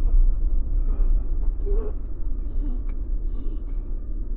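A steady low rumble, with a man's short, breathy gasps over it.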